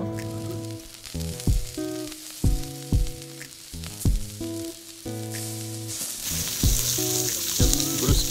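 Meat sizzling on a wire grill over a wood campfire, the sizzle growing louder in the last two seconds. It plays under music with held notes and a kick drum about once a second.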